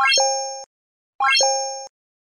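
Two identical synthetic pop-and-ding interface sound effects from a like/subscribe end-screen animation, just over a second apart. Each is a quick rising run of bright notes settling into a short two-note ring that fades and stops abruptly.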